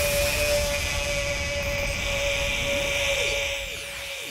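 A sound effect from the DJ's decks: a loud, steady rushing noise with a held mid-pitched tone, starting abruptly and easing off slightly near the end.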